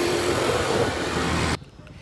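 Road traffic noise beside the street: a steady noise from a vehicle going by. It cuts off suddenly about one and a half seconds in.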